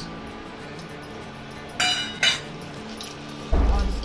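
Two short metallic clinks about half a second apart, a steel plate knocked against the rim of a wok as spice powders are tipped in. A dull low thump follows near the end.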